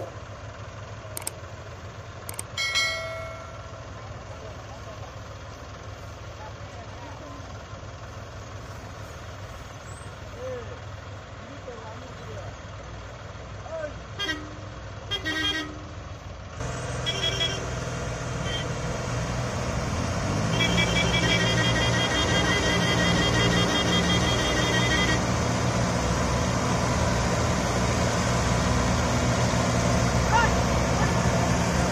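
Combine harvesters' diesel engines running, getting louder about halfway through as a machine works and moves closer. A vehicle horn toots, and voices are heard.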